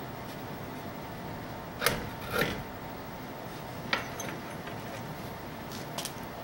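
A plywood disc being handled on a wooden bench jig: a sharp wooden knock about two seconds in, a short rub or scrape just after, and another click about four seconds in, over a steady low hiss.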